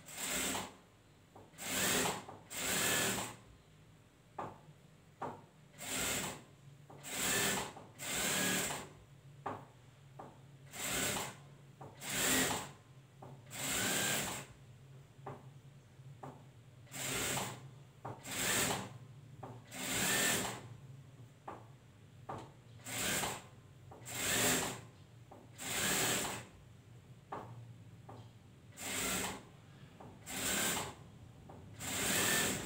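Industrial sewing machine stitching fabric in short runs of a second or less, starting and stopping every one to two seconds, with a low motor hum between runs.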